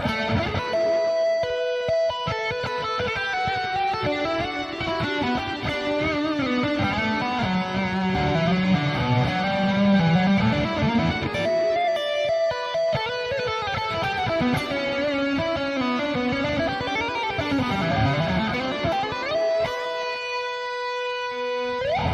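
Electric guitar playing several fast legato lines of hammer-ons and pull-offs; the last line ends on a held note. The pull-offs at the top of the lines are pluck-type, snapping the string out from under the finger, which gives them a loud, pronounced meowing sound.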